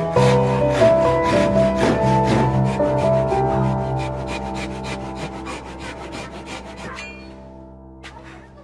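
Japanese-style pull saw cutting a wooden block by hand with quick, even strokes, several a second, stopping about seven seconds in. Background music plays underneath.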